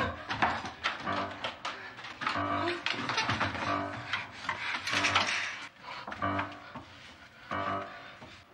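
Horror film soundtrack: a tense score of repeated pitched notes, about one every three quarters of a second, mixed with sudden sharp, noisy sound effects, the loudest about five seconds in.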